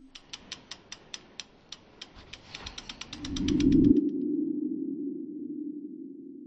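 Logo-animation sound effects: a run of sharp ticks that speed up over about four seconds under a rising swell, which peaks as the ticks stop and gives way to a low hum that fades out.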